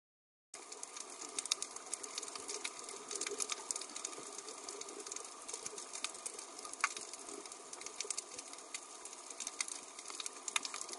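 Underwater crackle of a coral reef: a dense, steady field of sharp clicks and pops, starting abruptly about half a second in, with a few louder clicks standing out.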